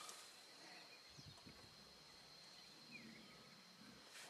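Near silence: faint outdoor background with a thin steady high tone and a couple of faint short chirps.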